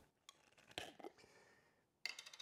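Near silence, with a few faint clicks about a second in from a small glass dressing jar's screw lid being opened.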